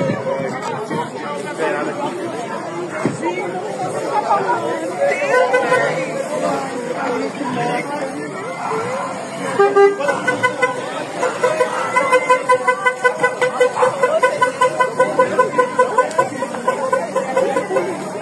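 Chatter of onlookers' voices, then from about ten seconds in a vehicle horn sounding in fast, even pulses, about three a second, over the voices.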